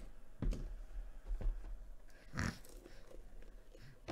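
Quiet handling sounds of a hard plastic graded-card slab held in the hands: a few small clicks and knocks, with one short rustle about two and a half seconds in.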